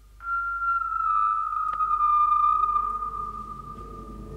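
Electronic music: one high, sustained electronic tone that slides slowly down in pitch and fades toward the end, with a short click about halfway.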